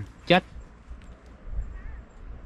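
A short voiced exclamation from a man about a third of a second in, then low, faint wind rumble on the microphone.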